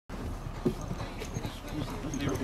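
Hoofbeats of two racehorses galloping on a dirt training track, an irregular run of dull thuds. A brief, louder sound stands out about two-thirds of a second in.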